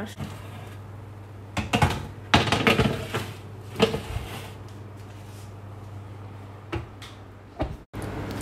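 Metal baking tray rattling and scraping against the oven rack as it is handled, with a few sharp clatters in the first half and a set-down clack near the end as it goes onto a glass-ceramic hob, over a low steady hum.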